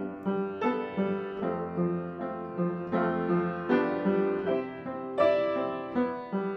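Upright piano played solo: a steady, even pattern of repeated chords, struck about two to three times a second and left to ring.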